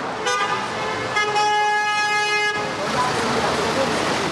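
Car horns honking in street traffic: a short honk, then a longer steady blast of about a second and a half, over the noise of traffic.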